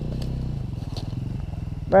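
Off-road motorcycle engine idling steadily.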